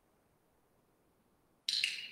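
Near silence, then a brief sharp hiss-like sound just before the end.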